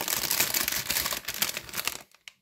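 Clear plastic bag crinkling as it is handled, a dense run of crackles and small clicks that cuts off suddenly at the end.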